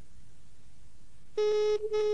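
Telephone ringback tone as heard by a caller: faint line hiss, then about a second and a half in a double ring begins, two short buzzy pulses with only a tiny gap between them. It is the signal that the called phone is ringing.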